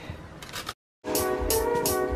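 Faint scraping of a raw potato on a metal box grater, cut off by a moment of dead silence. Then background music starts about a second in and is the loudest sound.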